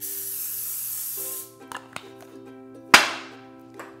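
Aerosol cooking spray hissing steadily into a nonstick frying pan for about a second and a half. About three seconds in, a sudden loud click with a short fading rush as the gas burner under the pan is lit.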